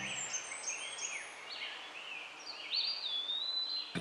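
Small birds chirping: many short, quick chirps sweeping up and down, with a longer whistled note that falls slowly near the end, over a faint hiss.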